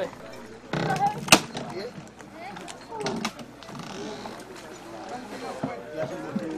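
Background voices, with a scraping noise ending in a sharp knock about a second in and a few lighter clicks around three seconds: hand tools and a pry bar working at old shipwreck timbers.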